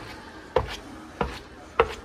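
Footsteps on the cleated metal steps of a stopped Schindler escalator: three firm steps, evenly paced about two-thirds of a second apart.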